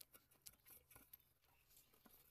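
Near silence with a few faint clicks of a screwdriver and small metal parts at the electric iron's wire terminals.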